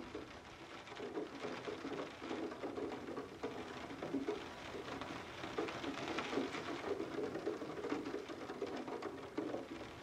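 Steady rain pattering on a window.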